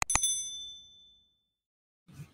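Notification-bell sound effect from a subscribe animation: a sharp click-like strike followed by a bright, high metallic ding that rings out and fades away within about a second and a half.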